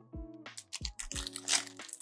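Crinkling of a Panini NBA Hoops trading-card pack wrapper as it is picked up and opened, mostly in the second half, over background music with a steady beat.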